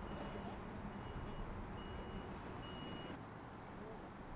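Vehicle reversing alarm beeping, plausibly from a tractor with a hydraulic boom arm: a high half-second beep a little under once a second, getting louder, over a low engine hum. The beeping stops about three seconds in.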